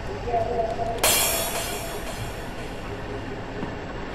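Dark drum and bass intro sound design: a low rumbling drone with a brief held tone, then about a second in a sudden hit whose hissing noise fades away over a couple of seconds.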